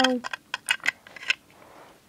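A spoken phrase trails off, then about five light, sharp clicks and taps of small plastic toys being handled: a Littlest Pet Shop figure knocked against its plastic pet bed.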